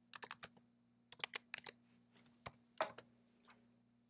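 Computer keyboard keys being typed: a short run of irregular key taps in small clusters, the keystrokes of a command being entered at a terminal.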